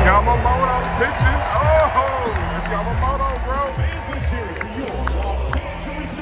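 Stadium public-address music with a heavy, steady bass line booming over the noise of a ballpark crowd, with voices rising and falling through it.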